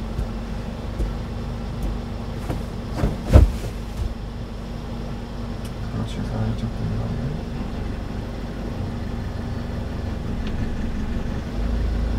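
Kia light truck's engine running steadily, heard from inside the cab, held at the half-clutch against the applied foot brake so the truck does not move off. A single sharp thump about three seconds in.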